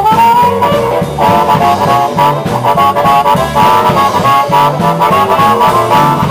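A live blues band playing an instrumental passage between vocal lines: a lead melody of bending, held notes over a steady bass line and drums.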